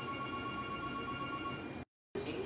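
Telephone ringing: a steady electronic ring tone of a few held pitches that stops near the end, after which the audio cuts out completely for a moment.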